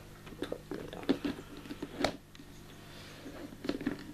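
Clear plastic lid being handled and fitted onto a plastic tub, giving a series of light clicks and knocks of plastic on plastic, the sharpest about two seconds in.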